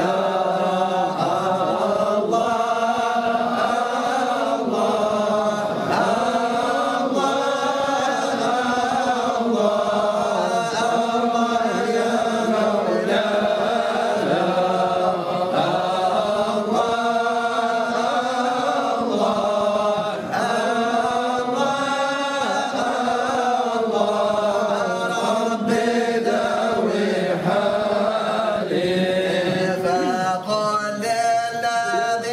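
Men's voices singing a Sufi devotional chant (sama') together in a slow, continuous melody with long held notes, with no instruments.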